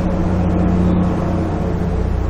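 Steady low background hum with a faint noisy haze over it, unchanging throughout.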